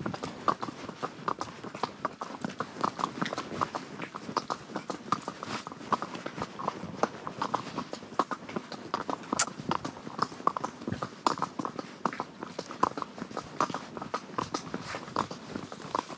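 A horse's hooves clip-clopping on a stony gravel track: a steady run of sharp knocks, several each second.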